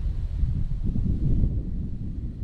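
Wind buffeting the microphone: a rough, uneven low rumble that rises and falls from moment to moment.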